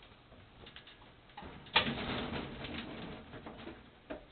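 A sharp knock about two seconds in, then about two seconds of irregular clattering and scraping, from pinsetter roller parts being handled.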